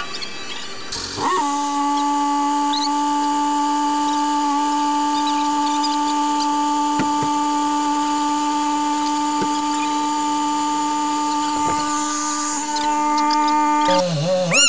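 A motor's steady whine, starting about a second in and holding one pitch for about twelve seconds, with a few faint clicks over it.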